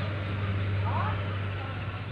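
A steady low hum under a general outdoor noise, fading away near the end, with one short rising chirp about a second in.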